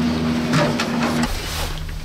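Gondola lift machinery in the station: a steady mechanical hum and whine with a couple of light clanks. The whine stops a little over a second in, leaving the low hum.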